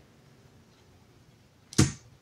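Near silence with faint room tone, then near the end one short, sharp breath noise from the woman just before she speaks again.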